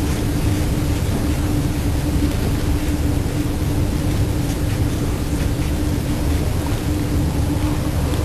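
Loud, steady hiss of recording noise with a constant low hum running through it. It switches on abruptly just before and does not change.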